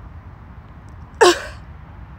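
A woman's single sharp, forceful exhale through the mouth, a short voiced "hah" falling in pitch, about a second in, as part of a breathing exercise.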